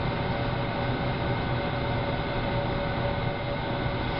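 Steady mechanical hum and rumble of kitchen machinery running, with a faint high steady tone over it.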